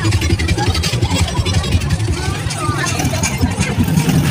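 Loud street-parade din: a steady low rumble with the voices of a crowd mixed through it.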